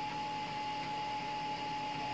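Room tone: a steady hiss with a constant thin, high-pitched whine.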